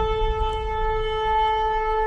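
A shofar blast held as one long, steady note over a low rumble.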